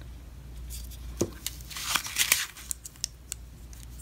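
Rustling and scraping of packing foam and packaging as nail polish bottles are handled and one is pulled out, loudest about two seconds in, with a few sharp clicks.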